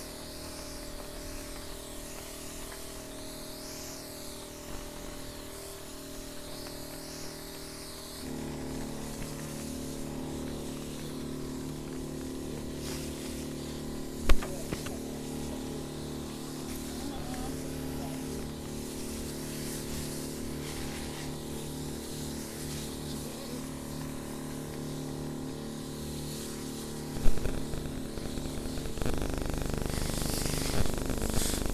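Background music of sustained, slowly changing chords, shifting about eight seconds in. Two sharp knocks cut through it, one about halfway through and one near the end.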